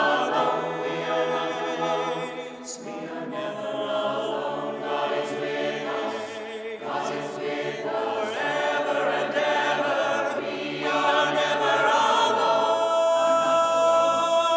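Mixed choir of men's and women's voices singing an a cappella anthem in sustained chords over a low bass line, swelling onto a loud held chord near the end.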